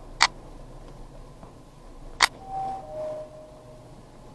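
Two sharp clicks about two seconds apart, then an elevator's two-note descending electronic chime (a higher tone stepping down to a lower, longer one), signalling that the car is arriving at a floor.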